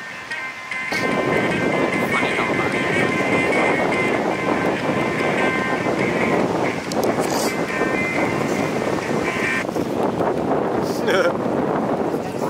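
Wind buffeting the microphone over breaking surf, a loud rough rushing that comes in about a second in. Background music with steady held tones plays under it until about ten seconds in, and a voice is heard near the end.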